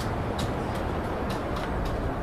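Outdoor street ambience on a walk: a steady low rumble of noise with light, irregular clicks two or three times a second, like footsteps on paving.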